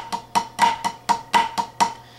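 Drumsticks playing flam accents on a practice pad: about eight sharp strokes, roughly four a second, each with a short ring.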